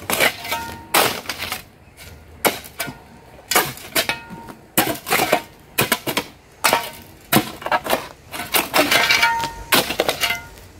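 Steel shovel blade jabbed again and again into stony ground, each stroke a sharp clank or scrape on rock, some with a short metallic ring, about one to two strokes a second. The blade keeps meeting stone rather than sinking into soil.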